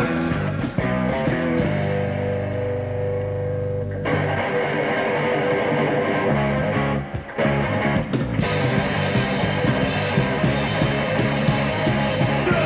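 A punk rock band playing live, heard off an old cassette demo recording: electric guitar, bass and drums. A few seconds in, the band holds long notes with the drums thinned out, then the full band with cymbals comes back in about eight seconds in.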